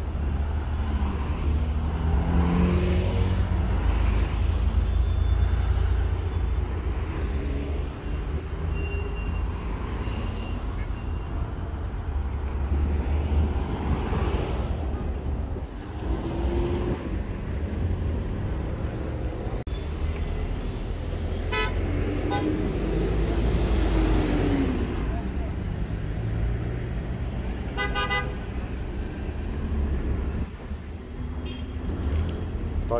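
Street traffic in a jam: cars running with a steady low rumble, short car-horn toots about two-thirds of the way through and again near the end, and voices in the background.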